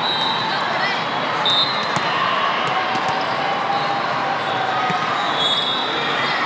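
Volleyball tournament hall ambience: a steady din of voices with balls thudding on the floor and being struck on the courts. A few short, high steady tones come through, near the start, about a second and a half in, and near the end.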